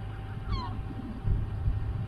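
A gull gives one short, falling call about half a second in, over a steady low rumble.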